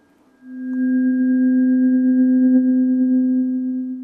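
Freshly struck tuning fork ringing, held close to a lapel microphone. It gives one steady pure tone with a few faint higher overtones, swelling up about half a second in and dropping away at the very end.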